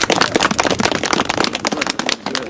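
A small group of people applauding, some of them in gloves: quick, irregular hand claps.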